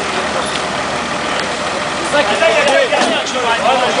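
Off-road 4x4 engine running steadily. From about halfway, several people's voices call out over it.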